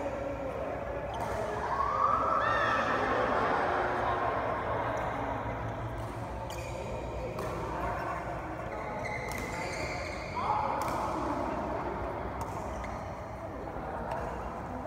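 People talking in a large badminton hall, with scattered sharp taps of rackets striking shuttlecocks and a steady low hum.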